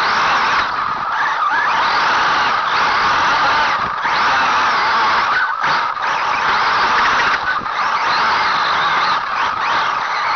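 Team Associated RC8Be electric 1/8-scale buggy driving flat out, heard from a camera on its chassis. The motor and drivetrain whine rises and falls in pitch with the throttle, over a loud, steady rush of running noise from the tyres and chassis.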